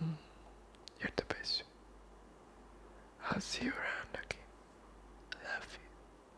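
A man whispering close to the microphone in short breathy bursts, with a few soft sharp clicks about a second in.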